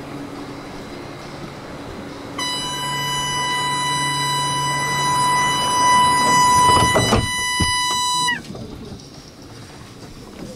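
Door-closing warning tone of a double-deck commuter train, one steady high tone held for about six seconds. The door thuds shut near the end of the tone, and the tone cuts off with a slight drop in pitch. Before the tone, the train hums steadily at standstill.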